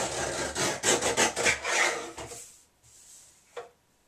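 A sheet of paper rasping and sliding against a paper cutter's board as it is trimmed and repositioned, for about two and a half seconds, then one light click near the end.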